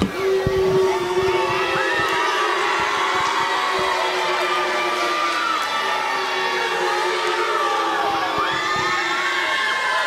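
Wrestling crowd cheering and shouting, many overlapping voices including high children's yells. A couple of sharp thuds come right at the start.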